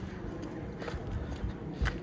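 Footsteps on a concrete sidewalk: a few soft steps over a steady low rumble.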